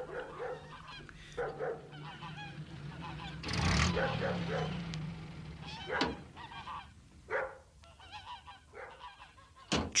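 Farmyard geese honking in short calls at intervals, over a low steady hum that fades out about halfway through.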